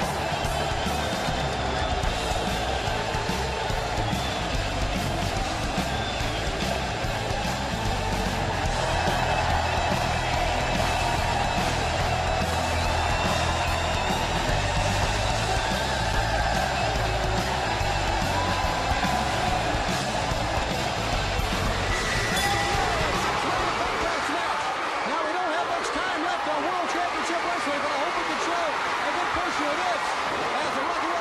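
Wrestling entrance music, guitar-led rock, played over arena crowd noise. The music's bass cuts out about three-quarters of the way through, leaving crowd noise.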